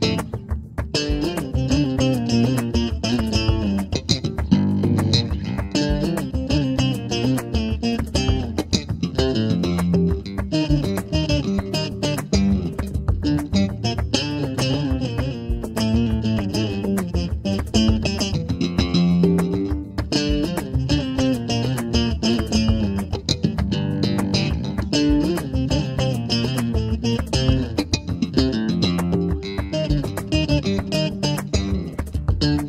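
Six-string electric bass played in a flamenco style: fast runs of plucked and strummed notes, with a short break just after the start.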